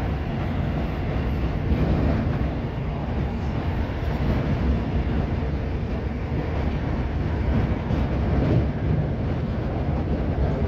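Steady running noise of a Class 319 electric multiple unit at speed, heard inside the passenger saloon: a continuous low rumble of wheels on rail and the body in motion.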